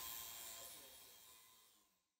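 Faint workshop background noise with a thin steady whine, fading out gradually until it is gone.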